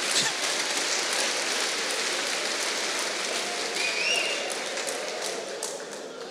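A church audience laughing and applauding after a joke, a steady clatter of clapping that fades toward the end, with a brief high call from the crowd about four seconds in.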